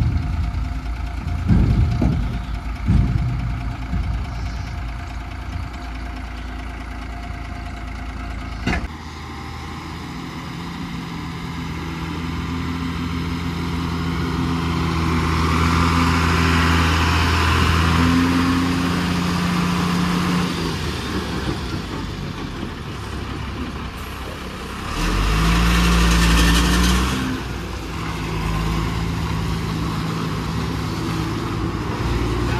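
Diesel engine of a Tata dump truck running as the truck pulls up close and moves past, its pitch rising and stepping as it is driven. A louder surge of engine comes late on, with a hiss over it.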